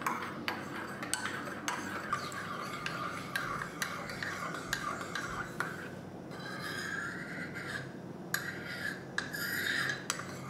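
Metal teaspoon stirring in a porcelain cup, scraping round the bottom and sides, with frequent light clinks of the spoon against the cup.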